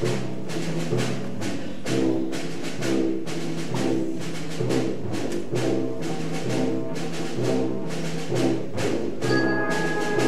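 Concert wind band playing: low brass chords over a steady beat of percussion strokes. Near the end, sustained higher wind notes come in.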